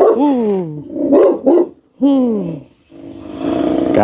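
A large dog barking: two drawn-out barks that fall in pitch, about two seconds apart, with shorter sounds in between.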